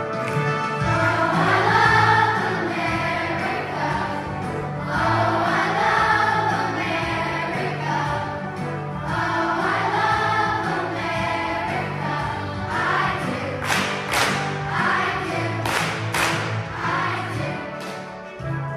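A choir singing a song over instrumental accompaniment, with sustained bass notes beneath the voices.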